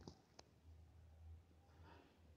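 Near silence: faint room tone with a low hum and one faint click about half a second in.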